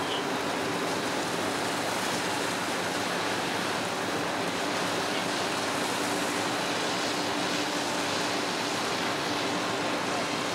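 Steady rushing hiss of a fire hose stream spraying water against a burning building, with a faint steady hum beneath it.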